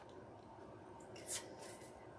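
Faint rub of a tarot card being slid across a tabletop, with one brief swish a little over a second in, over quiet room tone.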